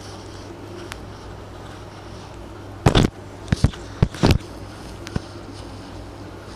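Steady low hum, with a cluster of sharp knocks and rubbing noises bunched around the middle, from hands and hair being handled close to the microphone while a plait is braided.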